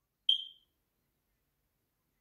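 A single short, high electronic beep just after the start, fading out quickly.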